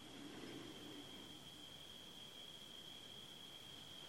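Near silence: faint room hiss with a thin, steady high-pitched tone.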